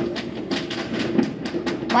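Voices of people outside that sound like laughing, heard from a distance, with irregular sharp pops and clicks over them.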